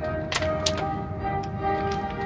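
Automatic car wash heard from inside the car: a steady low rumble with two sharp taps against the car, one about a third of a second in and another a third of a second later. Music with sustained notes plays over it.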